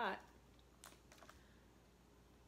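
A few faint, light clicks about a second in from hands picking through a wire basket of boiled crawfish and shrimp, the shells clicking as they are handled.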